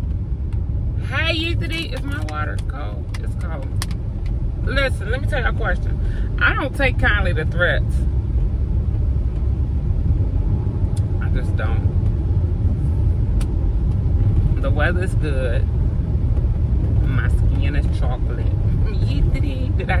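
Steady low rumble of a car heard from inside the cabin, with a voice coming in and out over it.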